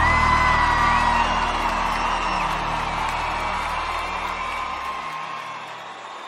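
The final sustained chord of a live sertanejo band, fading out over about five seconds, under a crowd cheering and whooping.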